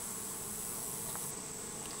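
Honeybee colony humming steadily from the open hive.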